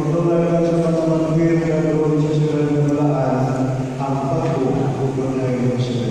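A congregation singing slowly in unison in long held notes, the pitch changing a few times.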